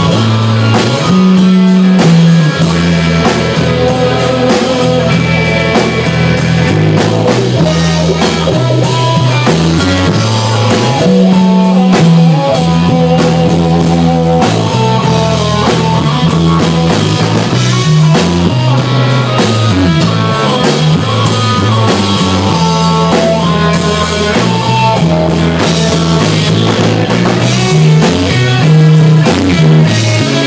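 A live rock band playing a song: guitar and drum kit over a walking bass line, loud and continuous.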